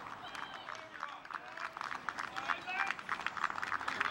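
Scattered hand-clapping from footballers and a small crowd at full time, growing denser from about halfway through. Distant voices call out over it.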